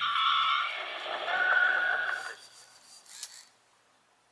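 Slightly distorted cassette audio from a Teddy Ruxpin toy's speaker: about two seconds of held, wavering tones with no words, fading out, then a short click near the end.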